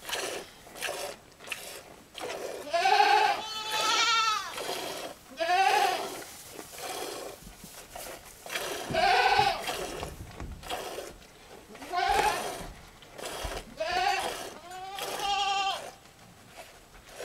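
Domestic goats bleating, about six calls spread through the stretch, some long and quavering.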